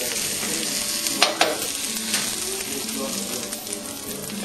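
Bacon-wrapped hot dog and onions sizzling steadily in a hot frying pan, the bacon getting crisp. A spatula scrapes against the pan once, just over a second in.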